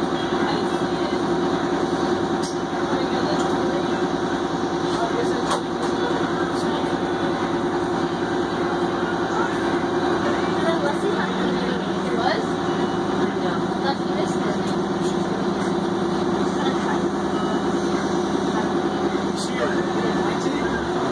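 Crown Supercoach Series 2 school bus engine idling while parked, a steady hum heard from inside the cabin; a lower steady tone joins about halfway through.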